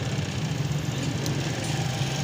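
A small engine or motor running steadily: a low, fast-pulsing hum.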